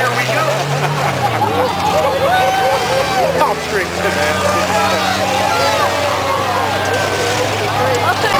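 Spectators in the grandstand chattering and calling out, many voices overlapping, over the steady low drone of the cars' engines running on the dirt track.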